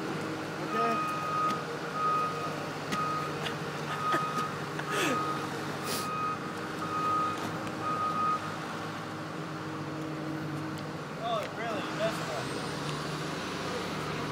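A heavy truck's reversing alarm beeping about once a second, stopping a little past halfway, over a steady low engine hum.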